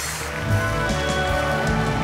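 Live orchestra playing held notes, with applause mixed in.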